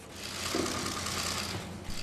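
A steady hiss with a low hum underneath, fading in over the first half second.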